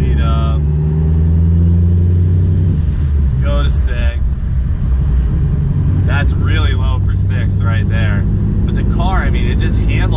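Supercharged C7 Corvette V8 with headers and a loud aftermarket exhaust, heard from inside the cabin, pulling at low rpm through the lower gears on light throttle. The engine note climbs a little for about three seconds, breaks at a gear change, then carries on as a low, steady drone in a higher gear.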